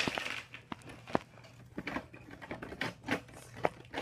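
Handling noise: irregular light clicks and taps as toys and the hand-held camera are moved about.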